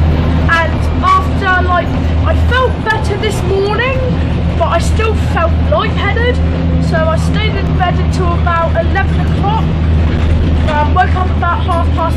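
A boy's talking over the steady low drone of a moving bus, heard from inside the passenger cabin.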